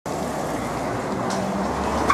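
Steady traffic noise with a constant low engine hum.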